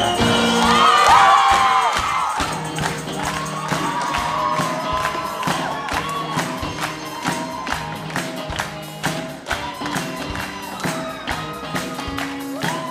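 Live choir and band performing: many voices singing held notes over drums keeping a steady beat.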